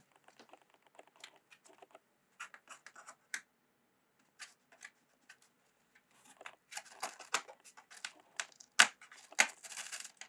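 A cat's claws and paws scratching and scuffing on the cardboard floor of a box: irregular scrapes and small clicks, sparse at first and busier and louder in the last few seconds.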